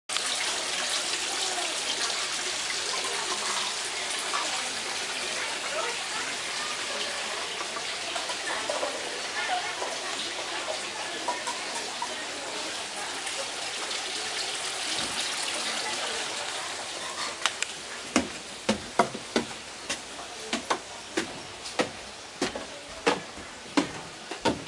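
Water splashing steadily from a tiered stone fountain, fading away after about seventeen seconds. Then a run of sharp taps, about two a second.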